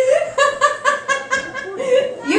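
A woman laughing: a quick, high-pitched run of 'ha-ha-ha' pulses through the middle, trailing off near the end.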